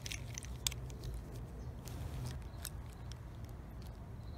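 Tube cutter being turned around the thin steel can of a cheap 18650 lithium-ion cell to cut off its bottom end: faint, scattered clicks and crunches of the cutter wheel working on the metal, over a low steady hum.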